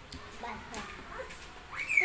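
Short wordless vocal sounds, ending in a high pitched call that rises and then falls near the end, over a few light clicks of utensils on a plate.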